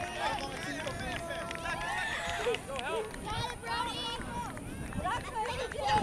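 Several voices shouting and calling at once across an outdoor soccer field, overlapping and unclear, from players and sideline spectators during play.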